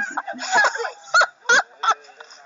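A person's excited vocal cries: a stretch of voice, then three short, sharp yelps in quick succession in the second half, the sound of someone happy and overjoyed.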